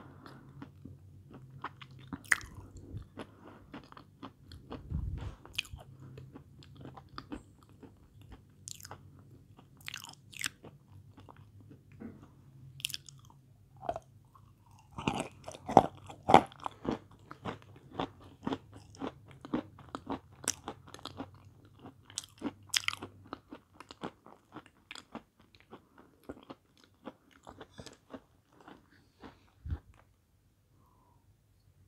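Lumps of edible chalk being bitten and chewed, with repeated crisp crunches and crumbling. The crunches are densest about halfway through.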